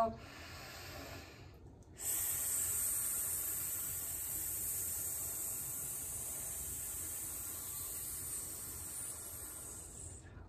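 People hissing a long, steady 'sssss' snake sound with their voices while in cobra pose. It starts about two seconds in and is held for nearly eight seconds before stopping.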